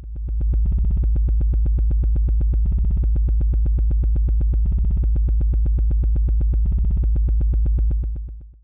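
Electronic synthesizer bed under a title card: a loud, steady deep bass drone pulsing fast and evenly, fading in at the start.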